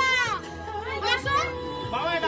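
Excited voices calling out in a crowded room, over background music with a held note.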